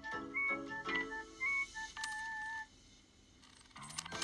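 Background music: a light keyboard melody of short notes, ending on a held, wavering note; it breaks off for about a second before starting again near the end.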